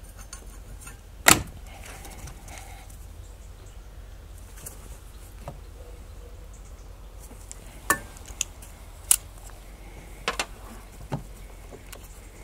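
Sharp metallic clicks of water-pump pliers gripping and squeezing the spring hose clips on a plastic coolant expansion tank's pipes. The loudest click comes about a second in, and a run of several more near the end.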